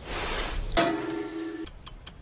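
The hiss of a steak searing in a cast-iron skillet dies away. A short held musical note follows about a second in, and quick clock-like ticking begins near the end.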